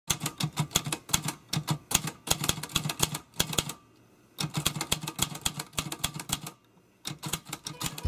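Typewriter keys clacking in quick runs of strikes, broken by two short pauses, one near the middle and one shortly before the end.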